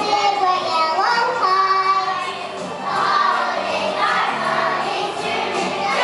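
A choir of young children singing a song together.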